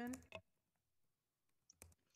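Near silence broken by a few short clicks about a second and a half in, a computer mouse clicking. A spoken word ends at the very start.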